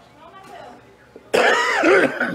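A man coughing into his fist: after a quiet pause, one loud, harsh cough about two-thirds of the way in.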